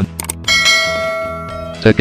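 A bell-like chime struck once about half a second in, after a couple of quick ticks; several steady overtones ring and slowly fade, then stop abruptly near the end.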